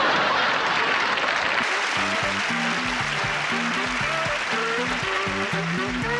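Studio audience laughing and applauding. About two seconds in, instrumental music with a bass line starts and runs on.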